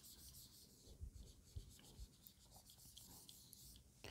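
Very faint rubbing of a handheld eraser wiping marker off a whiteboard, with a few soft knocks about one to two seconds in.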